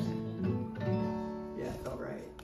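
Steel-string acoustic guitar, single strings picked and left to ring one after another, with a new note about half a second in and another about a second in, as the tuning is checked between songs.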